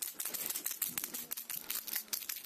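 Dense, rapid clicking and rattling close to the microphone as a hand handles a small plastic cat toy ball.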